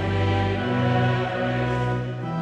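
Pipe organ playing held chords that change a few times.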